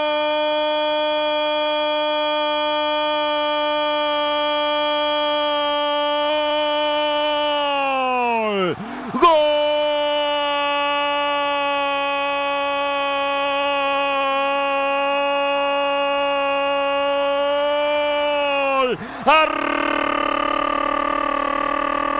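A radio football commentator's drawn-out goal cry, one vowel held on a steady pitch for about nine seconds before it sags and breaks for a breath, then held again for about ten seconds, with a third, louder cry starting near the end.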